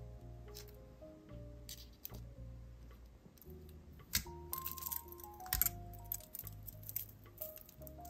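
Soft background music with held notes over a low bass, and a scattered run of small sharp clicks and clinks, busiest around the middle, from pliers working a metal jump ring and beads knocking together.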